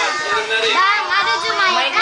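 A young child's high voice vocalizing, its pitch rising and falling.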